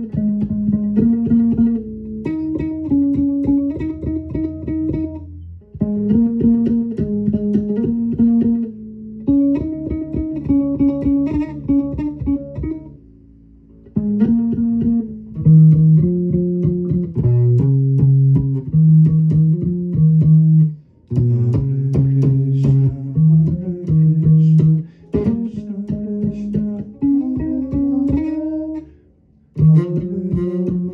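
Electric bass guitar played in melodic phrases of plucked notes, with brief pauses between phrases.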